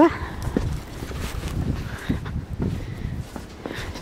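Footsteps of boots wading through deep, fresh snow: a run of soft thuds, a few a second. It opens with a short rising yelp from the walker as she steps into a drift.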